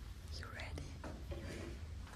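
A person quietly whispering "you're ready?" over a low, steady room hum.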